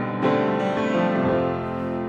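Grand piano playing a slow ballad passage on its own: a chord is struck just after the start and left ringing, fading gradually.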